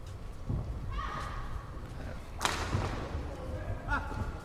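Badminton doubles rally on an indoor court: footfalls thudding on the court mat and shoes squeaking, with one loud, sharp racket strike on the shuttlecock about two and a half seconds in, echoing briefly.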